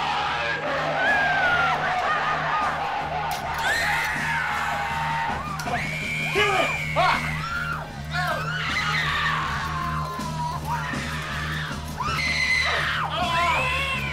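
Screaming voices, many high wavering cries rising and falling, over a film score with a steady low drone.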